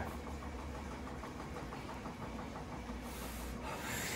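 Steady low hum of coin-laundry machines running, with a faint hiss over it.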